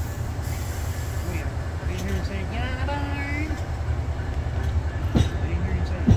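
Amtrak bilevel passenger train at the platform giving a steady low rumble, with a faint voice in the middle and a single sharp knock about five seconds in.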